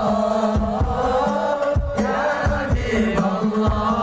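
Many voices chanting sholawat, Islamic devotional praise of the Prophet, in unison and held on long, gliding notes, over a steady drum beat of about two strokes a second.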